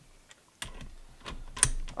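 Irregular light clicks and metal clinks as an impact wrench's socket is handled and seated onto the head of a long bolt, with the sharpest clink about one and a half seconds in.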